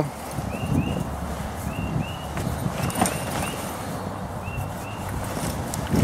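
Heavy canvas tent fabric rustling and flapping as a folding camper-trailer tent is unfolded and its floor laid out, with a few soft thumps.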